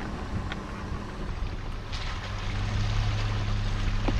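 Vehicle engine running with a steady low hum, with tyre and road noise on a wet dirt road, growing louder about two seconds in.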